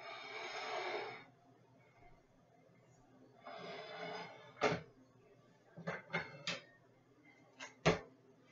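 Baking pans and a small container handled on a kitchen counter: two noisy stretches of about a second each, then a run of sharp knocks and clicks, the loudest near the end.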